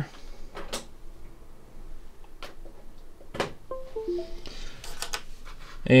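A few sharp clicks, then about four seconds in a short computer chime of a few quick stepped notes: Windows signalling that the USB thumb drive has been plugged in and recognised.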